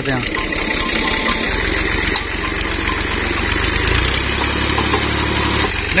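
Tractor's diesel engine running steadily at idle, with its low note getting stronger about a second and a half in and again near four seconds.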